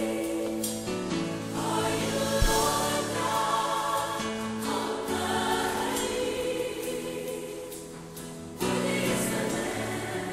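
Gospel choir singing long held chords over a live band, with a single low thump about two and a half seconds in; the music swells suddenly louder near the end.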